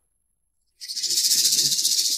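A dry rattling hiss, mostly high-pitched, that starts suddenly just under a second in and runs for almost two seconds.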